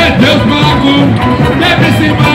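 Loud live samba carnival music: a samba percussion band (bateria) playing with singing over the stage sound system.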